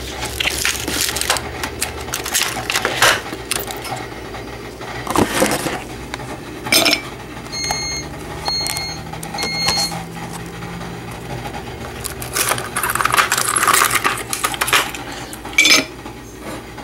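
Ice cubes being cracked out of a plastic ice-cube tray and dropped clinking into a cup, with repeated knocks and rattles. Three short electronic beeps about a second apart come partway through.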